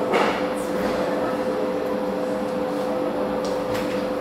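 Steady machine hum with one constant mid-pitched tone over a few lower ones, unchanging throughout, with faint brief hisses about half a second in and just before the end.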